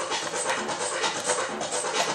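Thin plastic bag crinkling and rustling as it is handled close up, a dense, crackly rustle throughout.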